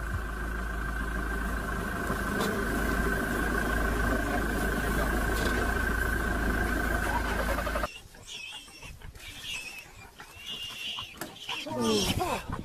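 A safari vehicle's engine idles steadily under a steady high whine and then cuts off abruptly about eight seconds in. A quieter outdoor background follows, with short high chirps and a falling call near the end.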